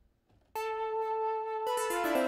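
Native Instruments Low End Modular software synth playing a plucked lead patch. About half a second in, a note sounds and rings on, and a few new notes come in just before the end.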